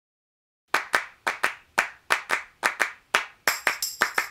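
Hand claps in a steady rhythm, about four a second, starting after a brief silence; a high shimmering jingle joins near the end.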